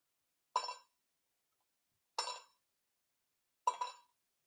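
Damage dice being rolled, three short ringing clinks about a second and a half apart.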